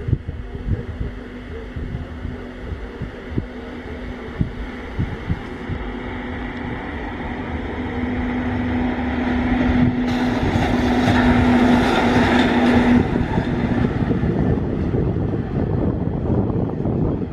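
Electric rack-and-adhesion locomotive of the Matterhorn Gotthard Bahn (HGe 4/4 II) hauling its coaches past. A steady electric hum and rolling noise grow louder to a peak a little past the middle, then ease off. Wind buffets the microphone, most in the first half.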